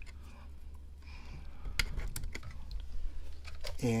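A few sharp plastic clicks and handling rustle as a cable plug is pushed into a wall socket and a small desk fan is picked up, over a steady low hum.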